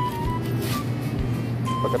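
Supermarket room sound: a steady low hum with short electronic beeps near the start and again near the end, and a brief crinkle of a plastic produce bag about two-thirds of a second in.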